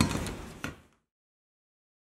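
Aluminum LED profiles handled on a work table: a light metallic knock, a short rustle of handling, and a second knock, after which the sound cuts off abruptly to silence.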